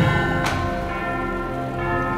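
Soundtrack music carried by bell tones: a deep bell stroke at the start and a sharper strike about half a second in, ringing on in long held notes.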